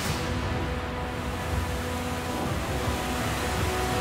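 Soundtrack music with a steady low rumble and rushing noise beneath it, from the episode's sound track.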